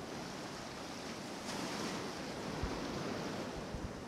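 Shallow surf washing over the sand, a steady rushing hiss, with a few short low thumps late on.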